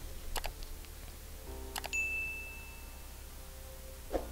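A few faint clicks, then a single bright ding that rings for about a second, starting about two seconds in: the click-and-bell sound effect of an animated YouTube subscribe button. A faint low hum lies under it.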